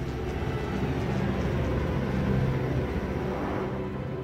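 Freight train boxcar rumbling past at speed. The noise swells towards the middle and eases off near the end.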